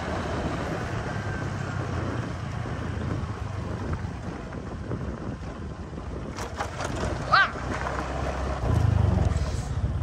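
Motor scooter engine running steadily while riding a dirt road, with wind rushing over the microphone. A short voice-like call rings out about seven seconds in, and the engine gets louder for about a second near the end.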